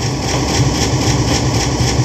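Konami Prize Strike slot machine playing its bonus-round sound effects as coins fill the grid. A steady low rumble runs under a quick, even run of high clinks, about six a second.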